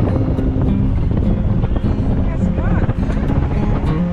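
Wind and road noise from a moving car, with music playing over it.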